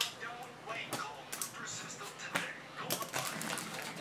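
Faint speech in the background, with a few sharp clicks.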